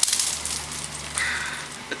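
Confetti cannon going off, then a crackling patter of paper confetti raining down that slowly fades.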